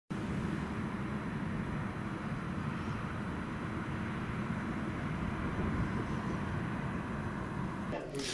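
Steady low rumble of distant road traffic, with no distinct events.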